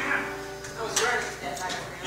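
The last strummed chord of an acoustic guitar dying away, followed by a few brief, soft voice sounds and a light click about a second in.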